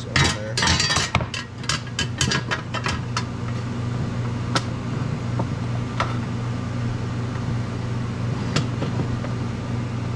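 Aluminium pieces of a welded plenum box and its flange plate clinking and clattering as they are handled on a wooden workbench: a quick run of clinks in the first three seconds, then a few single knocks spaced out, over a steady low hum.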